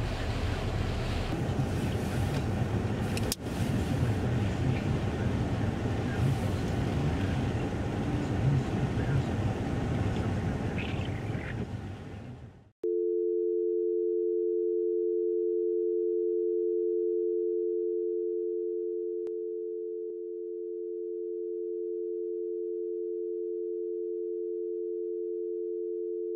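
Steady background noise with a single click about three seconds in, fading away a little before halfway. Then a telephone dial tone, one steady two-note hum, cuts in sharply and holds to the end, dipping slightly in level partway through.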